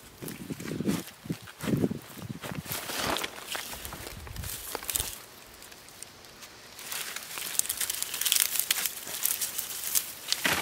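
A short-handled trowel digging and scraping in garden soil while dry, dead potato vines rustle and crackle as red potatoes are dug out by hand. Dull thuds of soil come in the first couple of seconds, and a louder run of crackling from the dry stems comes about seven seconds in.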